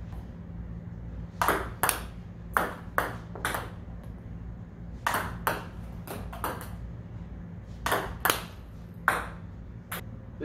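Table tennis ball being served long and fast: sharp clicks of the paddle striking the ball and the ball bouncing on the table, coming in quick groups of two or three, several serves in a row. A steady low hum runs underneath.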